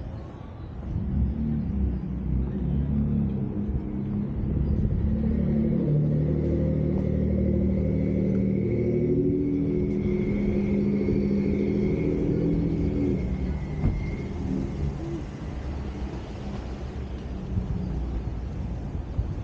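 Motor vehicle engine running close by. It is a low sound with a steady pitch that builds about a second in and fades out around fourteen seconds, with a faint high whine through its middle part.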